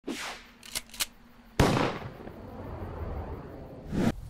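Intro sound effects: a short swish, two sharp clicks, then a loud bang about a second and a half in, whose low rumble dies away slowly.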